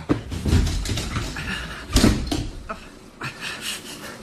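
Radio-drama sound effects of movement: irregular shuffling and knocking, with one loud thud about two seconds in.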